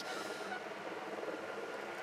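Faint, steady rushing noise: the wind and road noise of a live cycling broadcast shot from a moving camera motorbike, heard in a gap in the commentary.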